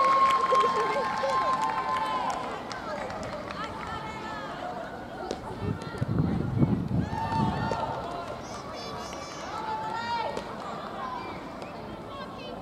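Small crowd of football spectators talking and calling out, opening with one long high-pitched shout as the cheering for the previous kick dies away.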